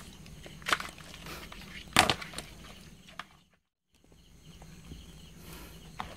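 A hand rummaging among live fish and crabs in a plastic basin: wet handling noise with a few sharp knocks, the loudest about two seconds in. The sound cuts out completely for about half a second past the middle.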